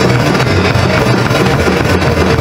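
Loud guitar-led rock music, dense and unbroken.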